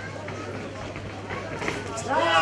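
Indistinct chatter of ringside spectators, over a steady low electrical hum.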